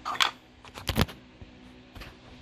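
Handling noise of a small plastic device on a desk: a few light clicks and knocks, one about a quarter-second in and a quick cluster just before one second in, the last the loudest.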